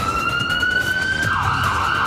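Police siren sound effect: a single tone rising slowly in pitch, then breaking into a rough, wavering wail about halfway through, over a low rumble.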